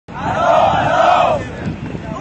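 Crowd of protesters chanting a slogan in unison: one loud phrase of about a second and a half, then a short dip before the next repeat.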